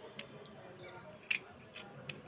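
Small blade scraping the surface of a wet slate pencil, making short crisp scrapes: three strokes, the loudest a quick double about two-thirds of the way through.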